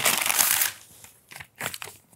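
A folded paper letter being opened and unfolded: a dense crackling rustle of paper that stops about two-thirds of a second in, then a few short paper rustles.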